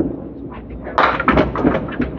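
A clatter of candlepin bowling pins and balls, sharp irregular knocks starting about a second in, over the low background noise of a bowling hall.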